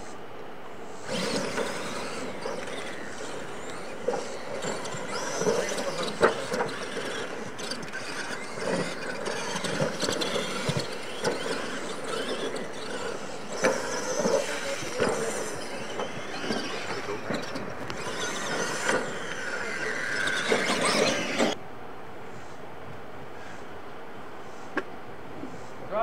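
Radio-controlled monster trucks racing on a dirt track: motors and drivetrains whining under throttle, with sharp knocks as they land off the ramps. It starts about a second in and cuts off suddenly near the end.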